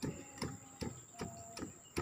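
Pestle pounding cassava leaves and garlic in a stone mortar, in even strokes about two and a half a second.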